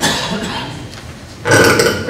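Short vocal noises picked up by the hearing-room microphones. There is a breathy burst at the start that fades, then a short, low voiced sound about a second and a half in.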